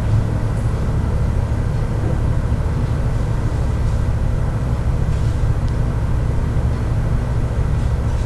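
Steady low rumble and hum of background noise, even and unchanging throughout.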